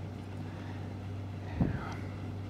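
Room tone with a steady low hum, and one brief soft sound about one and a half seconds in.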